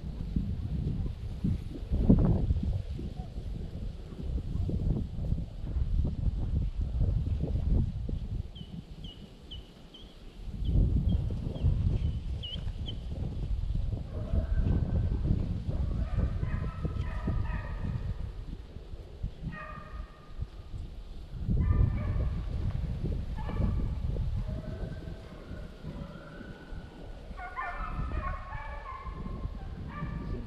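Wind buffeting the microphone in gusts. A quick run of high bird chirps comes about a third of the way in, and from about halfway on distant hunting hounds bay in broken calls.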